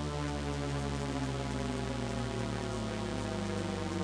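Descending Shepard tone from the Arturia Pigments 4 Harmonic engine: a dense, held stack of tones that keeps seeming to fall in pitch without ever arriving anywhere. It is thickened by unison detuning, delay and reverb, and its level stays steady.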